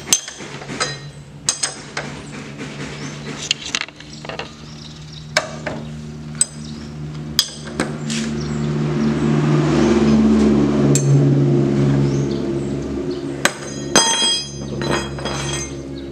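Metal spanner clinking on the front axle nut and fork of a Honda scooter as the axle nut is undone, in scattered sharp clinks and clicks. A low drone swells up in the middle and fades again.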